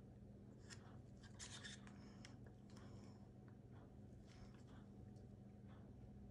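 Near silence: a faint steady hum, with a few soft, brief scrapes of a plastic spoon against a paper cup as paint is scooped out.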